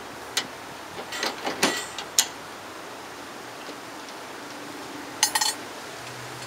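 Sharp metallic clicks and knocks from working a single-stage reloading press with a bullet-swaging die: a few separate clicks in the first two seconds, then a quick rattle of clicks about five seconds in.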